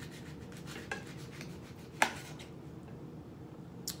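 Kitchen knife sawing through the skin of a dragon fruit on a plate: faint rasping strokes. There is a sharp click about two seconds in and a smaller one near the end.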